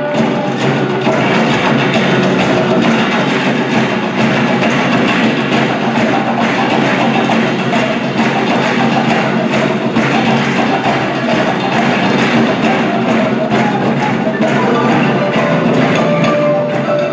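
Live marimba and percussion ensemble playing together: many mallet strikes on wooden marimba bars over dense hand percussion, keeping a steady, busy rhythm.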